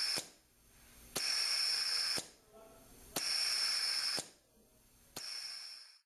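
Compressed-air vacuum venturi hissing in pulses of about one second with one-second pauses, each pulse starting with a sharp click: the vacuum being switched on and off in a simulated one-second lifting cycle, with a self-closing valve on the venturi's inlet port.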